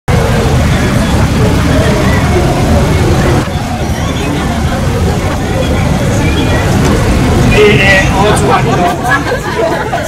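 Busy city-street background: indistinct voices of passers-by over the low rumble of road traffic.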